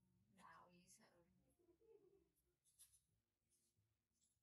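Near silence, with faint, hushed speech in the room.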